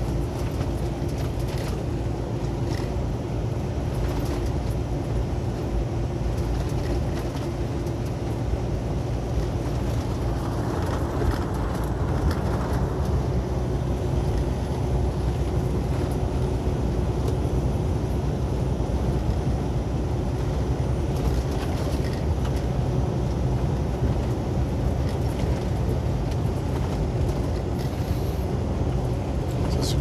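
Steady low engine drone and tyre-and-road noise heard from inside a truck's cab while driving on cracked pavement. A hiss swells briefly about a third of the way in.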